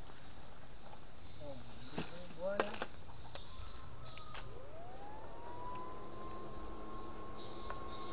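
Electric fish-shocker (a PDC 8 FET inverter) switched on, its whine gliding up in pitch over about a second, about halfway through, then holding steady with a lower hum beneath it. A few light clicks come earlier.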